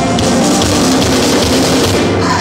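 Rock band playing live: a loud instrumental passage with a driving drum kit and guitars, and no singing.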